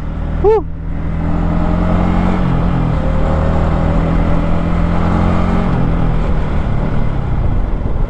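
Single-cylinder sport motorcycle engine under hard acceleration, heard from on board with wind rushing over the microphone; its pitch drops twice as the rider shifts up through the gears.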